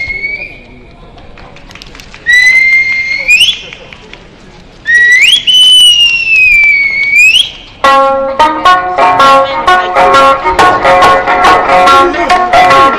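Eisa drum dance: three long, shrill whistles that slide in pitch, the last rising, sagging and rising again. About eight seconds in, Okinawan Eisa music with drum strikes starts.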